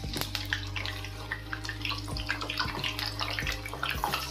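Whole bitter gourds deep-frying in hot oil in an iron kadai: a steady bubbling sizzle full of small crackles as freshly added pieces go into the oil.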